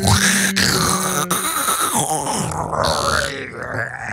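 Exaggerated vocal groans and moans from a person, with two sharp clicks in the first second and a half.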